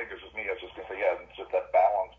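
A caller speaking over a conference phone line, the voice thin and narrow like telephone audio.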